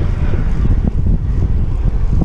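Wind buffeting the microphone of a handlebar camera on a moving bicycle: a loud, uneven low rumble.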